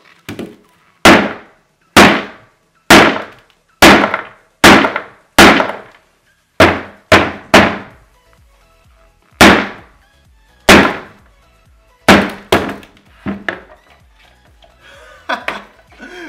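Rubber mallet striking a doll frozen hard in liquid nitrogen, about fourteen heavy blows at uneven intervals, each with a long echoing tail. The blows crack the frozen rubber skin open.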